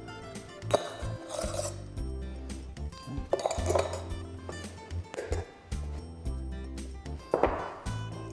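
A metal spoon clinking a few times against a metal milk-frother jug as froth is spooned onto a latte, over steady background music.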